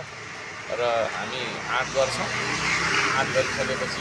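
A motor vehicle passing on the street. Its noise swells from about a second in, is strongest near three seconds and fades toward the end, with voices talking over it.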